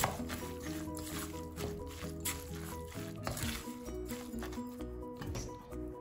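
Background music: a light melody over a steady beat.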